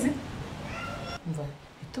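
Dialogue: women speaking, with a short high-pitched voiced sound about a second in.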